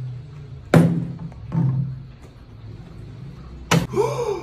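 Background music in a break between sung phrases: a low held tone with a sharp percussive hit about a second in, a softer one soon after, and another near the end.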